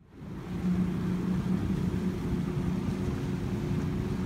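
Small outboard motor driving an inflatable dinghy, running steadily with a constant low hum; it fades in just after the start.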